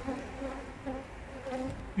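Honeybees flying around an open hive, a steady, slightly wavering hum.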